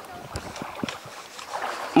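Quiet outdoor background at the water's edge: a low, steady hiss of moving water and light wind on the microphone, with a few faint ticks.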